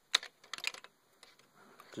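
Hard plastic Lego pieces clicking as a small magnetic drop package is fitted onto the model: one sharp click just after the start, then a quick run of smaller clicks within the first second.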